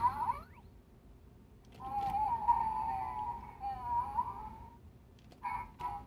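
Toy robot dog playing electronic dog sounds through its small speaker: a wavering, pitched whine lasting about three seconds, then a quick run of short beeps near the end.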